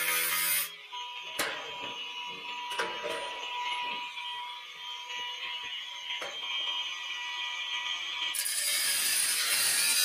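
Cordless angle grinder cutting steel C-purlin, stopping less than a second in; a quieter stretch with a few sharp clicks and knocks follows, and the grinder cuts again from about eight seconds in, loudest near the end.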